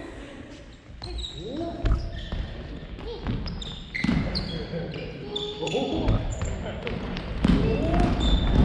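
Family badminton rally: shoes squeaking sharply on the wooden floor again and again, with the light smacks of rackets striking the shuttle. Players' voices call out over the play.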